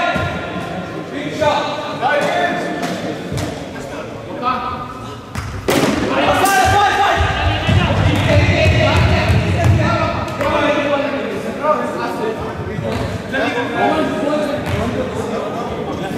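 A cricket bat striking the ball about six seconds in, a sharp crack followed by a second knock, then thuds of running feet on the sports-hall floor. Players' shouts echo in the large hall throughout.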